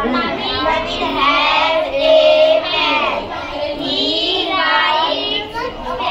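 Schoolchildren singing, with long held notes about two seconds in and again near the five-second mark.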